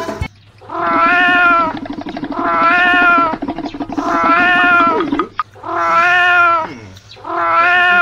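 A drawn-out, cat-like wailing call repeated five times, each about a second long and a little over a second apart, all holding much the same wavering pitch.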